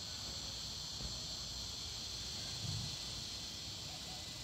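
Steady high-pitched chorus of insects droning without a break.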